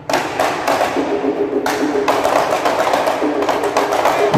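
Marawis ensemble of frame hand drums and bass drum playing a fast, dense rhythm together. The drumming comes back in abruptly just after the start, following a brief drop.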